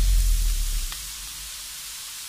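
Julienned vegetables sizzling in a hot wok: a soft, steady hiss. The deep bass of background music fades out during the first second.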